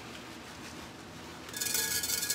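A plastic bag rustling and crinkling, its contents rattling, as it is shaken over a frying pan; it starts suddenly about one and a half seconds in, over a low, steady kitchen background.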